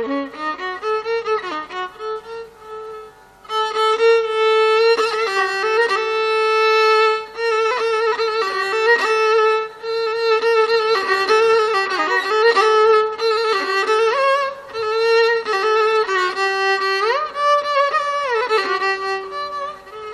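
Carnatic violin, bowed, playing a solo melodic line in the middle register with frequent sliding ornaments (gamakas). There is a short break about three seconds in, and wide upward and downward slides near the end.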